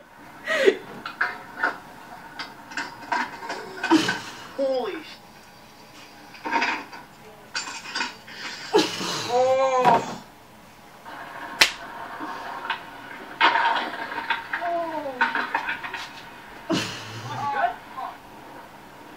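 Short bursts of people's voices with exclamations that rise and fall in pitch, and a few sharp knocks in between.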